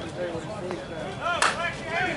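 Slowpitch softball bat hitting the ball: one sharp crack about a second and a half in, over players' voices calling out.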